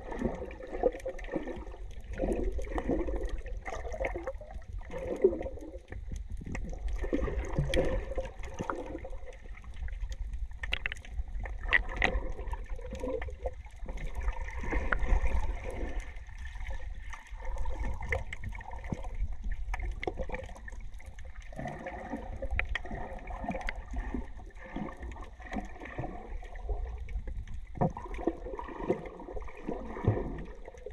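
Water sloshing and gurgling heard underwater, muffled, over a steady low rumble, with occasional faint clicks.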